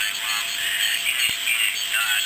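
Amateur single-sideband voice signals on the 80-metre band received by a crystal set with a beat frequency oscillator: thin, garbled voices with no low end, not cleanly resolved into speech, over a faint steady whistle.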